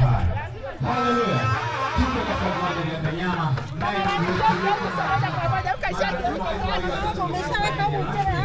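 Several voices talking over one another in a lively chatter, with music underneath.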